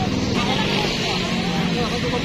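Street noise with a motor vehicle engine running steadily, under faint children's voices.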